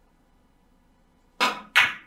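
A three-cushion billiards shot: a sharp click as the cue tip strikes the cue ball low for draw, then a second, louder click about a third of a second later as the cue ball hits the yellow object ball.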